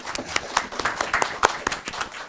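Applause from a small group of people, the separate hand claps quick and irregular.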